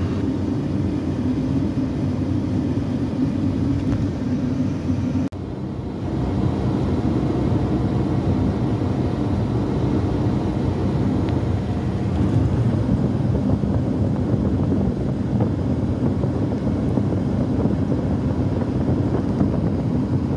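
Steady road and engine noise inside a moving car's cabin, with a brief break in the sound about five seconds in.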